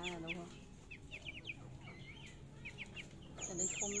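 Young, half-grown chickens peeping with many short, falling high chirps, and with a few lower, drawn-out calls at the start and again near the end. A thin, high, steady tone starts near the end.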